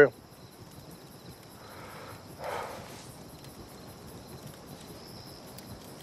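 Crickets chirping steadily in a night-time outdoor ambience, with one soft breathy rustle about two and a half seconds in.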